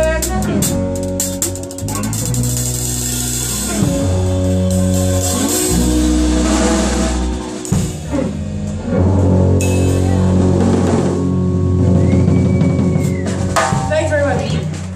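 Live band music with a drum kit: cymbals washing and crashing over held chords that change every couple of seconds. There is a flurry of sharp drum and cymbal hits near the end, the closing bars of the song.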